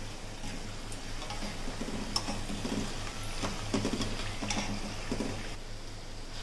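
Scattered light clicks and taps, roughly one a second, of a wire spider strainer and crisp-fried potato pieces knocking against a steel frying pan as they are lifted out of the oil, over a steady low hum.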